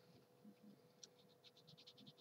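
Near silence, with a quick run of faint pencil scratches on cardstock from about halfway through as a mark is made.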